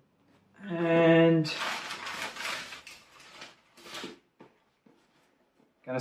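A short held hum from a man, then cardboard and packing paper rustling and scraping as he rummages in a cardboard shipping box for the next kit, with another brief scrape near the end.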